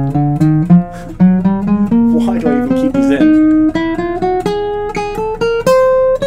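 Acoustic guitar picked one note at a time in a pinky stretching exercise: three adjacent frets, then a skip of one fret to the pinky. It is a steady run of about three or four notes a second, climbing gradually in pitch.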